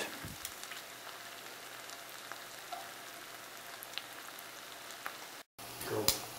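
Tempeh sticks sizzling steadily in hot coconut oil in a cast-iron skillet, with small scattered crackles. The sound cuts out for a moment near the end.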